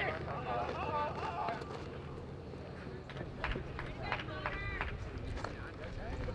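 Faint, indistinct voices calling out across an open field over a steady low rumble of wind or ambient noise. There is a held shout about two-thirds of the way through, and a few sharp clicks.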